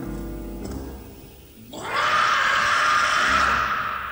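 Live small-band music: upright bass notes under sustained instrument tones. Just before the halfway point a loud, harsh rush of sound swells up abruptly, lasts under two seconds and fades.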